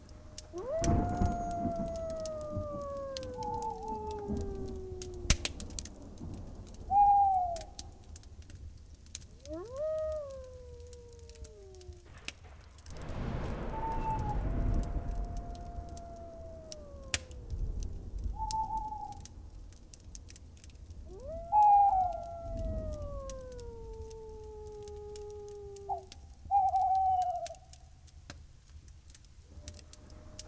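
Night-time animal sounds: three long howls that fall slowly in pitch, about a second in, near the middle and late on, with short hoots in between. A swell of rushing noise comes and goes about halfway through.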